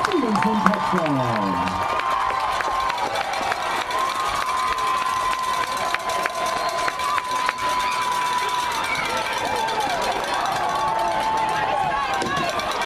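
Football stadium crowd cheering and talking after a touchdown, with scattered claps. A few loud voices shout over it in the first two seconds, and a steady high tone is held for several seconds in the middle.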